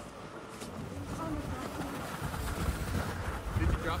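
Indistinct distant voices, with wind buffeting the microphone in an uneven low rumble that grows toward the end.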